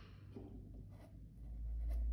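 Flat paintbrush stroking paint onto cloth: faint scratchy brushing with a few light taps, and a low dull rumble that swells near the end.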